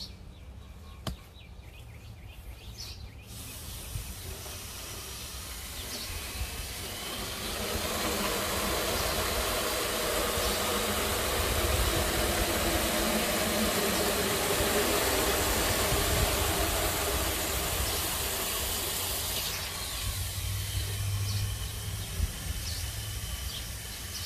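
Water from a garden hose nozzle running into a plastic milk jug, a steady rushing hiss that builds up over the first few seconds and eases off near the end.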